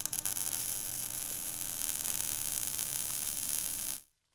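Steady, loud hissing, sizzling noise with fine crackles and a low hum underneath, a sound effect for an animated intro. It cuts off suddenly at the end.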